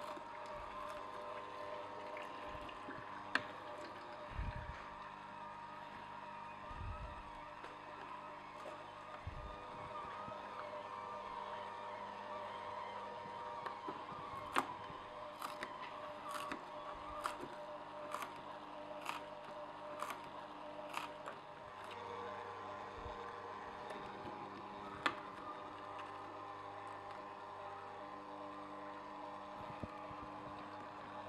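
Omega Juice Cube 300S horizontal auger juicer running with a steady motor and gear hum. Sharp clicks and knocks are scattered through it, thickest past the middle, as pineapple and celery root pieces are pushed down the chute and crushed by the auger.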